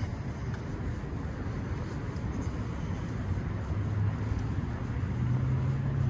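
A low, steady motor hum that grows louder about four seconds in.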